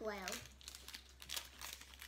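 Foil-lined candy-bar wrapper crinkling as it is handled, in a scatter of short crackles.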